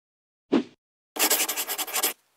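Sound effects of an animated title sequence: a short low thud about half a second in, then about a second of fast, rhythmic scratching.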